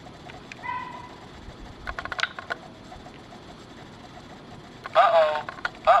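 LEGO Mindstorms EV3 brick's speaker playing its recorded 'Uh-oh' voice clip twice near the end, each a falling two-part call, as the touch sensor is pressed. Earlier there is a short electronic beep about a second in and a few light clicks.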